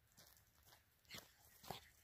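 Near silence, broken by two faint short sounds from a small terrier, one a little over a second in and a slightly louder one about half a second later.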